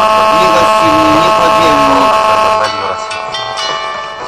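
Radio station jingle between programme segments: a loud held chord with a voice over it, dropping about two and a half seconds in to quieter instrumental music.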